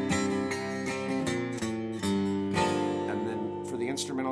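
Gibson Hummingbird acoustic guitar, tuned down a whole step to D standard, strummed through several ringing chords. The bass steps down on the A string into an A minor 7 chord.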